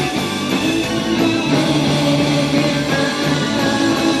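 A rock band playing live at full volume, with electric bass and electric guitar to the fore in a stretch without singing.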